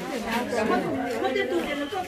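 Speech only: women and girls chatting.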